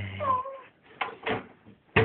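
A baby's brief vocal squeal that falls in pitch, over a low hum, followed about a second later by a short adult word.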